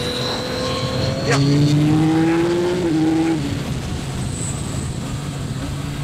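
Yamaha MT-09's 890 cc three-cylinder engine pulling hard from about a second in, its pitch rising steadily, then dropping suddenly near three seconds as the Y-AMT automated gearbox shifts up, before it eases off and settles lower.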